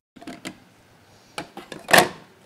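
A few faint clicks and knocks of kitchen utensils and dishes being handled on a counter, with one louder clink near the end.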